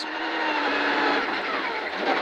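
Mitsubishi Lancer Evolution X rally car's turbocharged four-cylinder engine pulling steadily under power at about 90 km/h on a snowy stage, heard from inside the cabin along with tyre noise.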